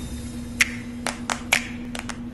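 Four sharp clicks in quick succession over about a second, over a steady low hum.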